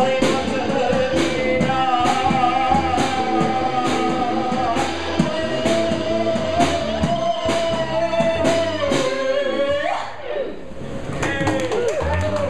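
Live rock band with electric guitar, bass, drum kit and a woman singing long held notes over steady cymbal strokes. About ten seconds in the final sung note slides up and the band stops, ending the song.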